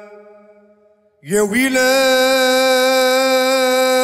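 A man singing a slow Arabic song into a microphone, drawing out long held notes. The first note fades away in the opening second, and after a short near-silent gap a new note starts, sliding up in pitch and then held steady.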